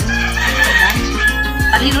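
A rooster crowing, one long call, over background music with a steady beat.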